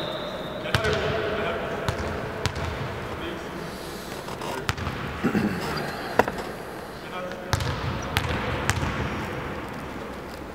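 A basketball bouncing, with scattered sharp thuds on a hardwood court, echoing in a large sports hall.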